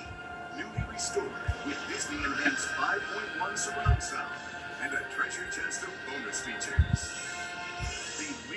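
Trailer music playing through a television's speakers, picked up by a microphone in the room. A few dull low thumps come through, the loudest about four seconds in and again near the end.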